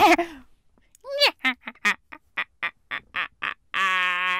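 A voice making a quick run of short, quack-like syllables, about four a second, then a longer held note near the end.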